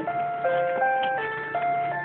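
Child's toy electronic keyboard sounding a string of single, steady electronic notes, about five in two seconds, stepping up and down in pitch.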